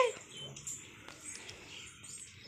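Faint brushing of a push broom's bristles across a tiled floor, with the last syllable of a woman's voice cut off right at the start.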